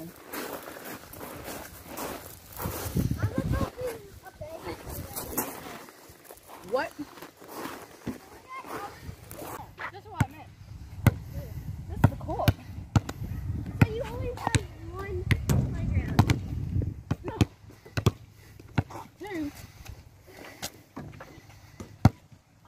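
Basketballs being dribbled on a hard outdoor court, with sharp, irregular bounces from about halfway through.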